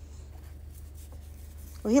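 Faint rustling and rubbing as fabric and rope dog toys are handled in a wooden toy box, over a steady low hum. A woman starts speaking at the very end.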